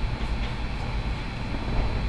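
A low, steady rumble.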